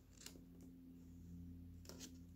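Near silence: room tone with a steady low hum and two faint, brief rustles of paper being handled, about a quarter second in and near the end.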